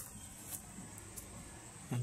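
Faint background of insects, a steady high-pitched drone, with a couple of faint ticks; a man's voice starts right at the end.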